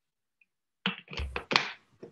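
A quick run of loud thumps and knocks, starting about a second in, picked up close to a microphone, as when it is handled or bumped.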